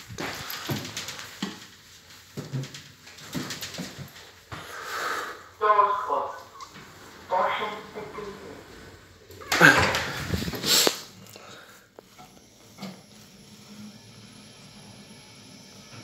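Indistinct voices in short bursts, the loudest about ten seconds in, then quieter room noise near the end.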